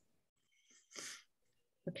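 Near silence on a remote meeting call, broken about a second in by one short breathy hiss from a person at a microphone, with a voice starting at the very end.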